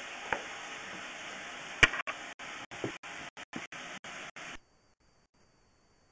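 Steady hiss, broken by short dropouts and a couple of sharp clicks, that cuts off to near silence about four and a half seconds in.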